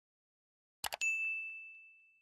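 Mouse-click sound effect, a quick double click, followed at once by a bright bell ding that rings on and slowly fades: the notification-bell sound of a subscribe-button animation.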